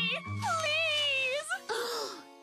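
A cartoon character's voice in long, wavering, sliding notes over background music.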